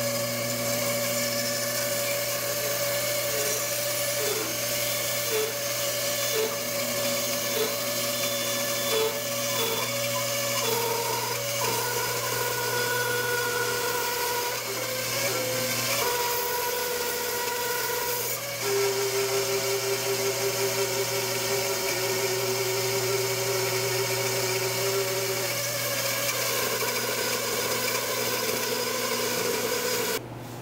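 Large bandsaw running steadily while its blade cuts a round bowl blank out of a bark-on ash half-log, the tone of the cut changing a few times as the log is turned around the circle.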